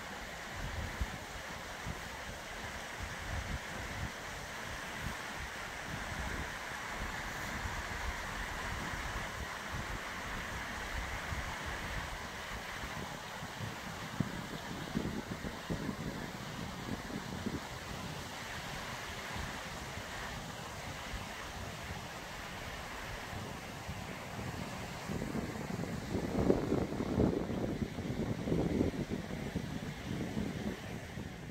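A stream rushing over rocks in a wooded gully, a steady, even wash of water noise that fades a little later on. Wind buffets the microphone in bursts near the end.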